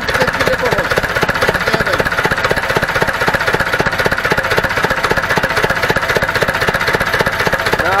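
Ursus C-360 tractor's four-cylinder diesel engine idling steadily with a rapid, even diesel knock, running smoothly after its rebuild and injection-pump work. The rocker gear is exposed, so the valve train's clatter comes through.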